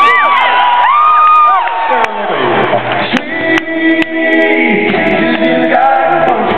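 Live arena sound: voices calling and singing out in rising and falling glides over crowd noise, then held notes as the band's instruments, a banjo among them, start into the song.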